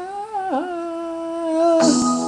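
A man singing a long held 'Ah' with almost no accompaniment. The note rises slightly, dips sharply about half a second in and settles; the karaoke backing music comes back in near the end.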